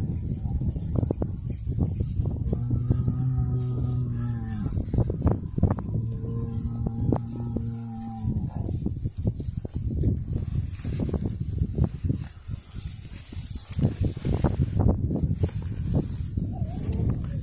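Dairy cow mooing twice, two long, low, steady calls about two and a half and six seconds in, over footsteps rustling through dry grass.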